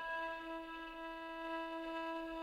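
A steady instrumental drone holding one pitch with its overtones, heard on its own in the pause between sung lines of a traditional carol.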